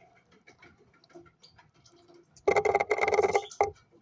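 Faint light ticks and scratches in the wood-shavings nest, then, about two and a half seconds in, a loud harsh buzzing call lasting about a second, with a short second burst just after it: a young cockatiel chick begging to be fed.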